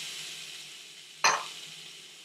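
Chicken breast sizzling in a hot stovetop grill pan, the sizzle slowly fading, with one brief sharp clack a little after a second in.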